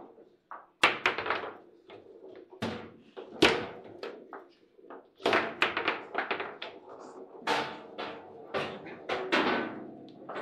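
Table football table knocked repeatedly: about a dozen sharp, irregular knocks and thunks of the rods and ball against the table, each ringing briefly in the cabinet.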